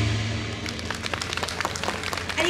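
Yosakoi dance music dying away, followed by scattered audience clapping made of many irregular claps.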